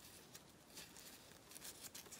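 Near silence, with faint soft rustling and crinkling as thin air-drying clay petals are folded and squeezed together by hand.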